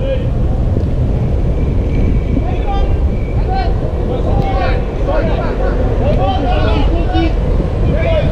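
Wind buffeting the camera microphone with a steady low rumble. Over it come distant shouts and calls from players on the pitch, most of them in the middle and later part.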